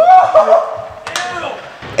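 A young man's voice giving a high-pitched, drawn-out exclamation, a short voiced sound about a second in, then a brief laugh near the end.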